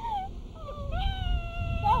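A person's high-pitched laughing squeal: a short rise-and-fall at the start, then one long wailing call held for about a second, falling slightly in pitch. A low rumble runs underneath.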